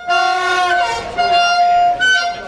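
A horn sounding in one long, steady blast that starts abruptly, its tone shifting slightly about a second in.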